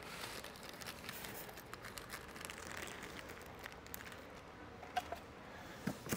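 Faint rustling and crinkling of packaging as small parts are handled and put aside in a foam-lined box, with a couple of small clicks near the end.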